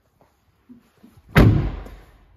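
Volkswagen Transporter van's front cab door swung shut with one solid slam a little past halfway through, after a few faint knocks.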